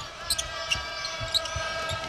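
A basketball bouncing on a hardwood arena court, four sharp thumps with the loudest a little past the middle, over a steady background hum of the arena.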